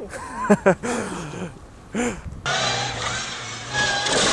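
A few short laugh-like vocal sounds, then about two and a half seconds in an abrupt cut to loud, noisy audio of a car crash: a small car hitting a wall, engine and impact noise over a low steady hum.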